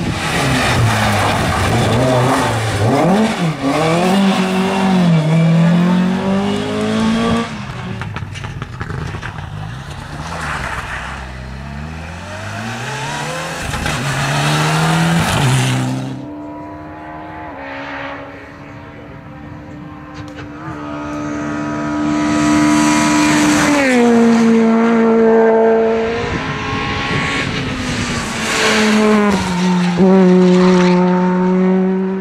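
Rally cars driven hard on a stage, engines revving high, their pitch climbing and falling again and again with gear changes and lifts off the throttle. About halfway through the sound cuts abruptly to another car holding a steadier engine note, which drops in pitch twice near the end as it slows.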